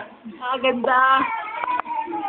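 A small girl singing unaccompanied, in short wavering phrases with brief breaks between them.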